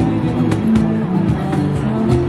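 Live acoustic band music: a steel-string acoustic guitar playing chords over a steady cajón beat, the cajón struck by hand.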